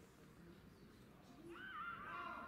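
Near silence, then about one and a half seconds in a young footballer on the pitch gives a high-pitched, wavering shout.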